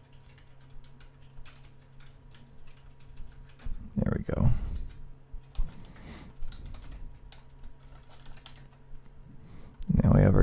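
Typing on a computer keyboard: quick runs of key clicks as commands are entered. A louder, low sound comes about four seconds in.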